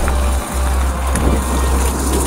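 Mountain bike with 29-inch wheels rolling over a wet gravel track: a steady noise of tyres on gravel under a loud wind rumble on the camera microphone.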